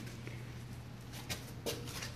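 A few faint handling clicks and light knocks in the second half, over a steady low hum.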